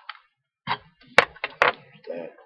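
Small clicks and taps from hands handling a coil's wire leads and a small metal atomizer deck, with a sharp click a little over a second in and another about half a second later, and softer ticks between.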